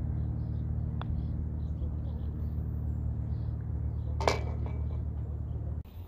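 A putter tapping a golf ball on a putting green, a faint click about a second in, followed a little after four seconds by a brief sharper clatter as the ball reaches the hole. A steady low machine hum runs underneath.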